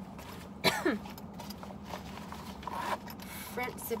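A single sharp cough about a second in, the loudest sound. Nylon backpack fabric rustles as it is handled, over a steady low hum.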